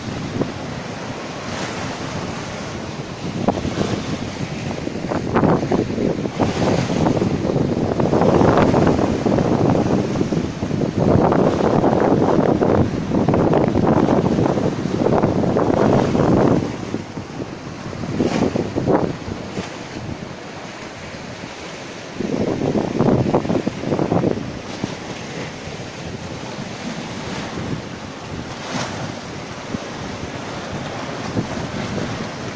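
Ocean surf breaking and washing over a breakwater and rocky shore, with gusty wind buffeting the microphone in long surges, loudest through the middle and again briefly later.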